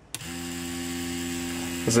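Cheyenne Thunder rotary tattoo machine starting up just after the start and then running with a steady hum. It is set to maximum stroke and starts on a low supply of about 6.8 volts.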